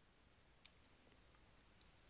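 Near silence: room tone with two faint, short clicks, one under a second in and one near the end.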